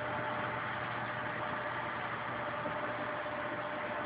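Steady hum and hiss of running reef-aquarium equipment, with a constant mid-pitched tone and a low hum underneath.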